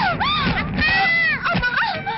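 A person wailing in distress: loud, high-pitched cries that rise and fall in long arcs, one after another.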